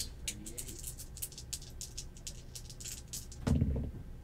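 A pair of dice clicking against each other as they are shaken in a hand, light irregular clicks several times a second. A short dull thump about three and a half seconds in.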